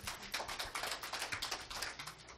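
Applause from a small audience: a patter of separate hand claps, many a second, that dies away at the end.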